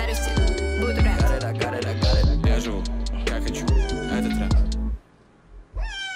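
Pop music with a heavy bass beat plays and cuts off about five seconds in. A pet cat then gives one long meow falling in pitch near the end.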